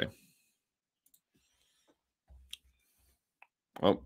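A few faint, scattered clicks at a computer, with a soft low thump about two and a half seconds in, then a brief spoken 'Oh' at the very end.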